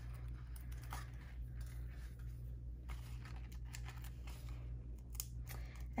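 Faint, scattered crackles and rustles of paper being handled as the backing papers are peeled off Stampin' Dimensionals foam adhesive dots on the back of a crinkled patterned-paper panel. A steady low hum runs underneath.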